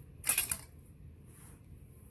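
A steel M1 Garand bayonet being picked up and handled: a brief rattling scrape of metal about a quarter of a second in, lasting under half a second.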